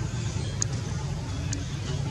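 Steady low background rumble, with faint people's voices and a couple of soft clicks.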